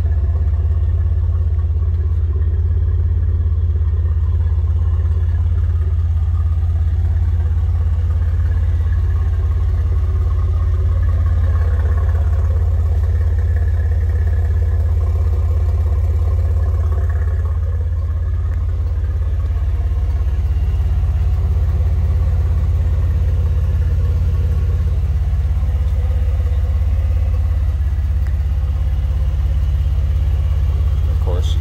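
Vortech-supercharged 3.8-litre V6 of a 2008 Jeep Wrangler Unlimited idling steadily.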